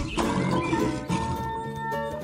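A lion roaring in the first second, over children's background music.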